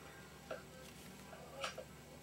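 Quiet room tone with two faint short clicks, one about half a second in and a slightly louder one about a second later.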